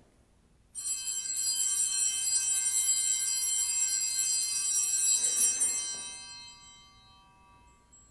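Altar bells ringing at the elevation of the chalice during the consecration. The bells start suddenly, keep jingling for about five seconds, then fade away.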